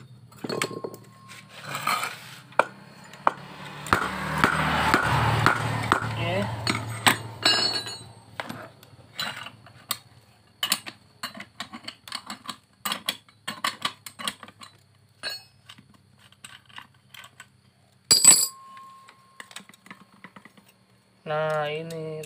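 Impact wrench running for about three seconds, undoing the centre nut of a Honda Vario's CVT clutch assembly. Then metal parts clink and clank as the clutch is taken apart, with one sharp louder clank near the end.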